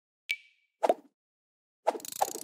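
Animated logo sound effects: a sharp click with a brief high ring, then a soft pop about half a second later and another pop near the end.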